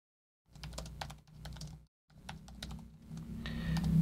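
Typing on a computer keyboard: a quick run of key clicks starting about half a second in, in two bursts with a short pause between, as a short line of text is entered.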